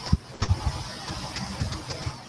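Irregular low thumps and bumps close to the microphone, handling noise from a hand working at the desk, over a faint steady hiss.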